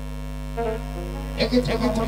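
Steady electrical mains hum from a stage microphone and sound system, with a few held musical notes; music and voices come back in about one and a half seconds in.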